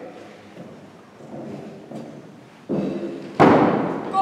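A single loud thump about three and a half seconds in, dying away quickly, after some faint voices.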